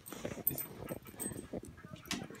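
A German Shorthaired Pointer–Foxhound mix dog sniffing and snuffling right at the phone, in short irregular bursts with small mouth clicks.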